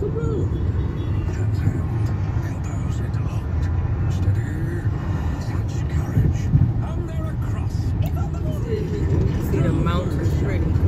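Steady low rumble of road and engine noise inside a car's cabin at freeway speed, with a radio announcer's voice faint underneath.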